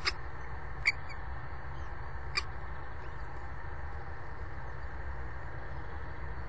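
Three short, sharp high peeps from the common kestrel nest box, at the very start, just under a second in and about two and a half seconds in, as the adult feeds its chick, over a steady low hum.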